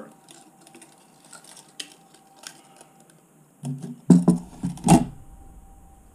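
Handling noise from a plastic fishing planer board fitted with clip-on tire weights: faint small clicks and rattles, then a cluster of loud knocks and thumps about four to five seconds in as the board is set down on the table.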